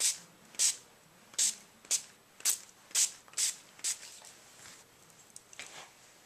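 Small pump spray bottle of Glimmer Mist shimmer spray being spritzed over rubber stamps: about eight short hisses in quick succession, stopping about four seconds in.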